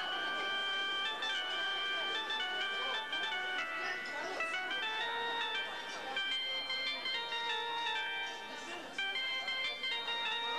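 Live accordion playing a melody in steady held notes that step from pitch to pitch, over the chatter of a crowd of diners.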